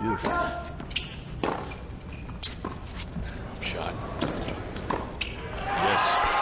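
Tennis ball being bounced and struck with rackets on a hard court: a string of sharp knocks roughly a second apart.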